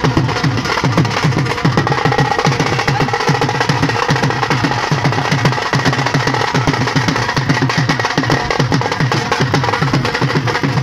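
Dhol drums played live in a fast, steady rhythm for dancing, with a faint high held note above the beat.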